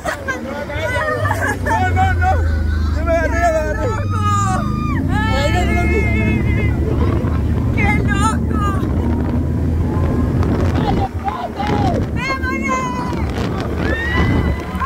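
Small motorcycle running under way, a steady low engine rumble with wind noise, its engine note climbing once about four seconds in. Over it, riders laugh and shriek.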